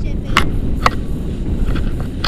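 Wind rumbling on the harness-mounted camera's microphone during a tandem paraglider launch, with two short sharp clicks about half a second and a second in.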